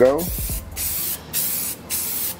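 Aerosol can of Rust-Oleum gloss white spray paint hissing in about four short passes with brief gaps between them, laying down a heavy, overlapping base coat.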